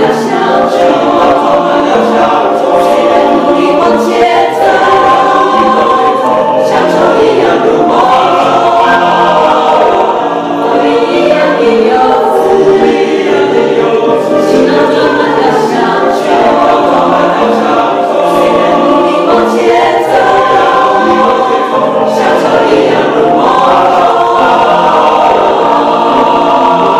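Mixed choir of men's and women's voices singing together in several parts.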